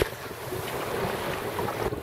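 Wind buffeting the microphone over a steady wash of water along the hull of a small open sailing boat, a Drascombe Coaster, under sail in a light chop.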